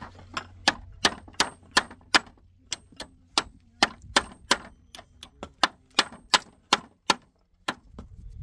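Hammer driving nails into the pine slats of a wooden pallet: quick, sharp strikes about three a second, each with a short metallic ring, with a brief pause near the end.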